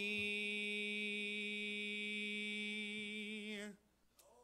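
A man's voice holding one long final note of a hymn, steady with a slight waver, cutting off shortly before the end.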